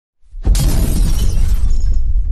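Title-sequence sound effect: a low rumble swells, then about half a second in a sudden loud shattering crash hits and dies away over about a second, leaving a deep rumble underneath.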